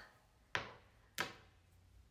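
Two sharp knocks about two-thirds of a second apart as a small foundation bottle with a dropper top is shaken.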